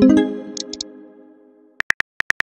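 Chat-app message chime: a musical tone rings and fades away over about a second and a half. Near the end, quick phone-keyboard tapping clicks start as a reply is typed.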